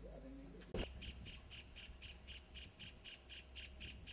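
A series of short, high chirping calls repeated evenly about four times a second, beginning about a second in just after a sharp click.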